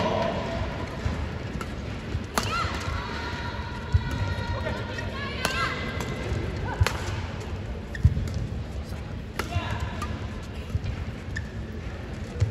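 A badminton doubles rally: racket strings hitting the shuttlecock about every second and a half, sharp clicks, with short squeaks of court shoes on the mat and the murmur of an arena crowd.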